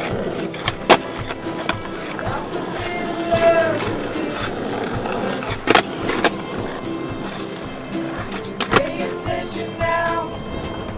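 Skateboard on asphalt: wheels rolling and a few sharp wooden clacks of the board popping and landing, about a second in, just before the middle and near the end, under background music with singing.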